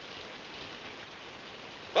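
A steady, even hiss with no distinct events, between two lines of dialogue.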